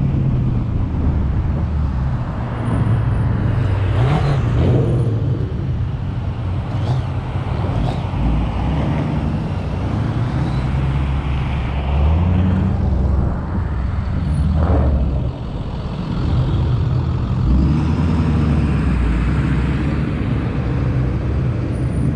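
A car's engine and exhaust heard from a hood-mounted camera while driving, the engine note rising and falling with the throttle, over steady wind and road noise.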